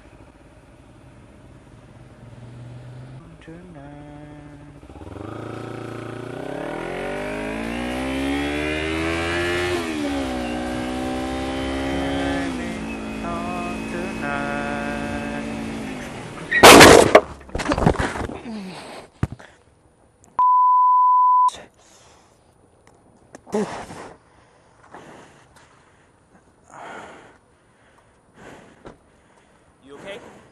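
Kawasaki Ninja 300 parallel-twin engine accelerating hard, revs climbing through a gear change or two, then a sudden loud crash impact about 17 seconds in as the motorcycle hits a car pulling out, followed by a couple of seconds of scraping and sliding. A short beep tone follows, then scattered quieter sounds.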